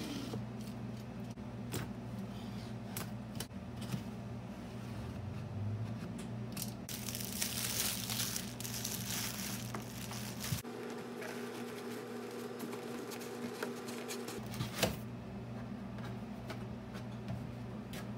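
Cardboard model-kit box being opened and unpacked: plastic wrap crinkling and tearing, most strongly for about two seconds some seven seconds in, with scattered knocks of the box and parts being handled, over a steady low hum.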